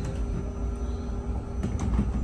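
Low steady rumble of a bus's engine heard from inside the passenger cabin, with a faint steady hum over it that fades out about a second and a half in.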